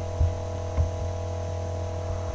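A steady electrical hum, several even tones held without change, in a pause between spoken sentences. A couple of faint, short low knocks occur within it.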